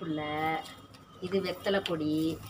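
A woman's voice speaking in drawn-out syllables.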